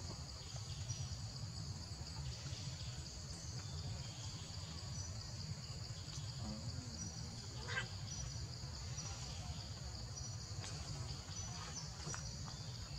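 A steady chorus of insects such as crickets, high-pitched and unbroken, over a constant low rumble, with a few faint brief sounds about eight seconds in.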